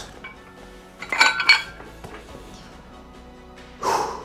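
A pair of plate-loaded dumbbells set down, their metal plates clinking and ringing briefly in two strikes about a second in.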